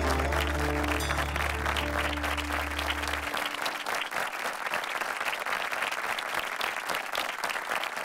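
Audience applauding as the song's last notes fade out, a held bass note stopping about three seconds in; the clapping carries on and slowly dies down.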